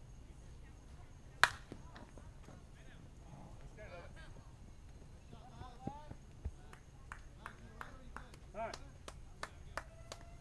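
Softball bat striking a pitched ball: one loud, sharp crack about a second and a half in. Distant players' voices call out afterwards, with a few smaller sharp taps near the end.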